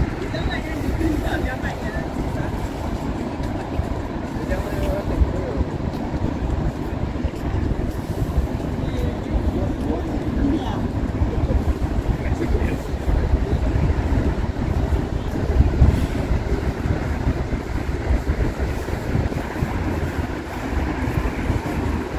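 Outdoor city ambience heard while walking: a steady low rumble, with passers-by talking faintly here and there.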